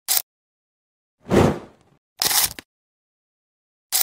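Edited intro sound effects over a title card: a short sharp burst, then a heavier hit with a deep low end that fades out, a second short burst soon after, and another brief hit at the end, with complete silence between them.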